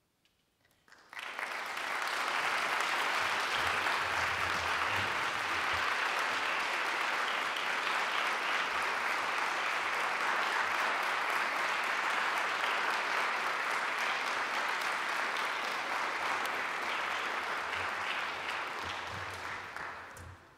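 Concert-hall audience applauding, breaking out about a second in after a hush and beginning to die away near the end.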